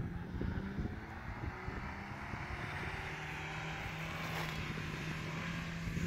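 A steady mechanical hum with a whirring hiss over it, from a running motor, growing slightly louder.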